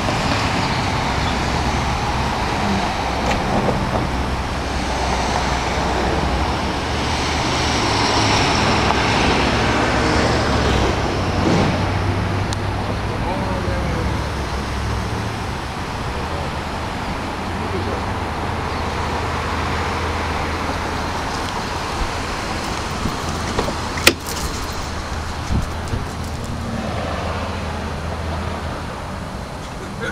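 A 2011 Dodge Charger SE's 3.6-litre V6 idling steadily, under outdoor traffic noise. A single sharp click comes about 24 seconds in.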